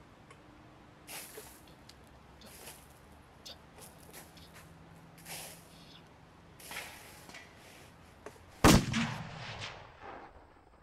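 Several soft, brief rustling sounds, then a sudden loud bang about nine seconds in with a low rumbling tail that dies away over about a second.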